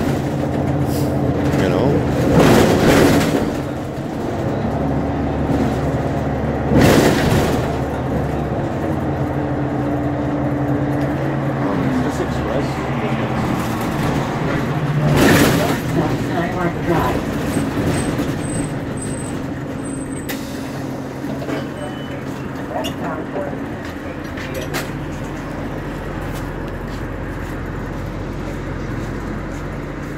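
City bus engine running, heard from inside the bus: its drone shifts in pitch as the bus drives, then settles to a steadier low idle near the end as the bus stops. Three loud bursts of noise come about 2, 7 and 15 seconds in.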